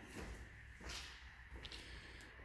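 Faint low rumble with one brief, soft swish a little under a second in, typical of a phone being moved while it films.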